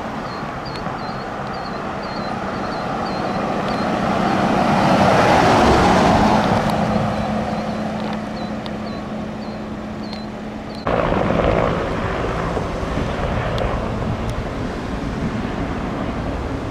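Ford fire department pickup truck driving past, its engine and tyre noise swelling to a peak about five to six seconds in and fading as it moves away. About eleven seconds in the sound changes abruptly to a steady rumble from a firefighting helicopter.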